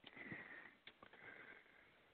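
A person sniffing faintly twice, close to the microphone, with a small click between the sniffs.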